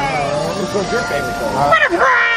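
A person's voice talking, with pitch swooping up and down, over a few steady held tones of background music.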